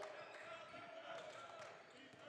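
Faint basketball dribbling on a hardwood court, the ball bouncing every so often, with quiet voices in the background.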